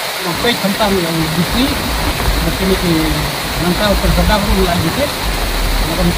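People talking, unclear, over a loud, steady rushing noise, with low rumbling coming and going from about a second and a half in.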